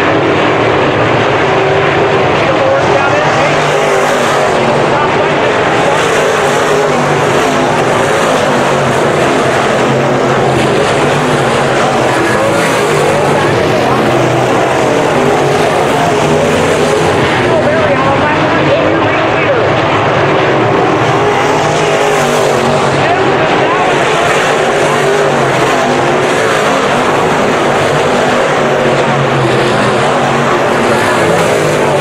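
A pack of dirt-track modified race cars with V8 engines racing around the track, their engines running loud and steady together. Several times the sound swells louder as cars come past close by.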